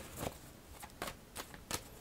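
Tarot cards handled and shuffled by hand: a handful of soft, quick card snaps and rustles, about five short clicks spread over two seconds.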